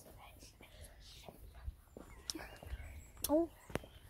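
Faint whispering and a few soft low thumps during a quiet stretch, then a short spoken "Oh" near the end.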